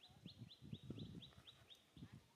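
Faint bird call: a quick, even run of short high notes, each falling slightly, about four a second, with soft low rustling thumps underneath.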